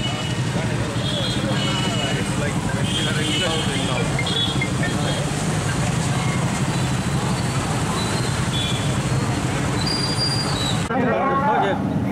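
Many motorcycle engines running together as a slow rally moves along a road, a steady low hum under crowd voices. Near the end it cuts to voices.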